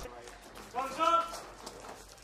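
A man's voice calling out once, a short raised word about a second in, against a faint background of movement.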